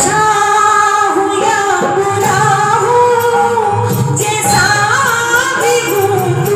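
A woman singing a Hindi devotional bhajan through a microphone, with long held notes that glide between pitches.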